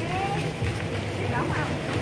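Indistinct voices of people talking nearby, in short fragments, over a steady low hum.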